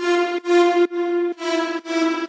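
Layered software-synthesizer lead with heavy reverb, playing back a phrase of repeated notes on nearly one pitch, about two a second, each with a bright, buzzy tone.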